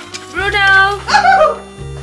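Dog whining and yipping in a few short, high calls that rise and fall in the middle, over background music.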